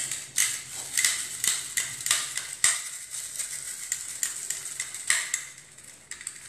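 Small stainless-steel herb mill being worked over a bowl to shred parsley onto minced meat: a quick run of scraping, rustling strokes, about three a second, easing off near the end.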